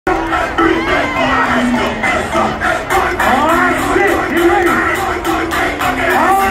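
A concert crowd shouting, whooping and singing along over loud hip-hop music from a PA, which carries a steady beat.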